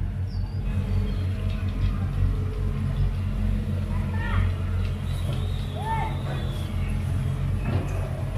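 Long-reach excavator's diesel engine running with a low, steady drone. A few faint short calls rise above it midway.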